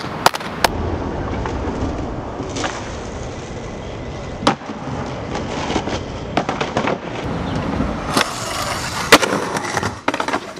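Skateboard wheels rolling on concrete, with sharp clacks of the board hitting the ground: two just after the start, one in the middle and the loudest about nine seconds in.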